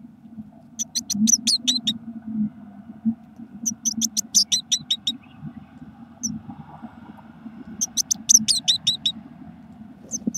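Blue tit nestlings begging for food: three bursts of rapid, high-pitched calls, each about a second long, over a low steady hum.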